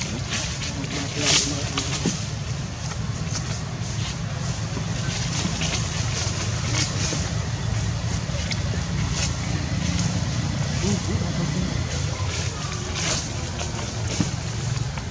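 Steady low hum with indistinct background voices, and short scratchy rustles, the loudest about a second in and near the end.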